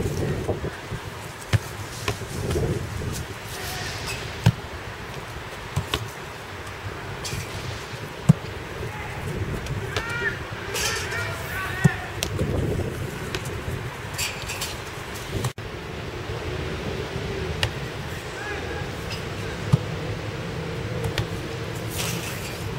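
Footballs being kicked and caught in goalkeeper drills: single sharp thuds a few seconds apart, over faint voices and outdoor background noise.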